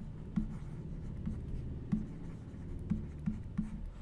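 Stylus strokes and light taps on a writing tablet as a word is handwritten, a few short clicks spread through the strokes, over a steady low hum.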